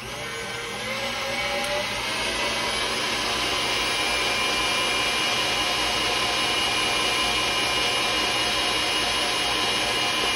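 KitchenAid stand mixer whipping egg whites and sugar into meringue. Its motor whine rises in pitch and gets louder as it speeds up over the first couple of seconds, then runs steadily at high speed.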